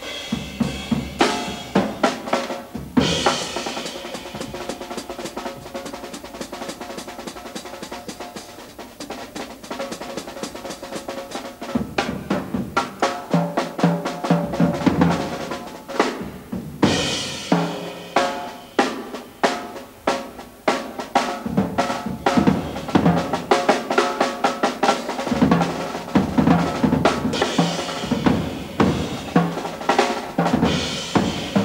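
Jazz drum kit (Slingerland) played busily with sticks: quick snare and tom strokes, bass drum and rimshots. Cymbal crashes come about three seconds in, around the middle and near the end, with a quieter stretch of lighter strokes between.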